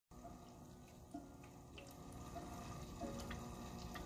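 Small tabletop water fountain trickling faintly, water falling into its basin with a few light plinks of drops.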